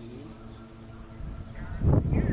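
Low, steady outdoor background with faint distant voices, then a louder voice or call starting near the end.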